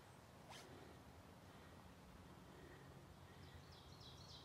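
Near silence: faint outdoor forest ambience, with one brief faint swish about half a second in. Faint high bird chirps begin near the end.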